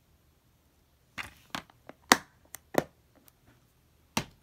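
Plastic DVD case being handled and closed: a run of about seven sharp clicks and knocks, the loudest about two seconds in, after a second of near quiet.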